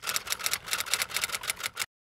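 Typing sound effect: a rapid run of sharp key clicks, about ten a second, matching text being typed out letter by letter. It cuts off suddenly shortly before the end.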